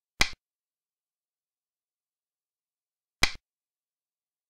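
Two sharp clicks about three seconds apart, the move sound effect of an animated xiangqi board, each marking a piece being placed.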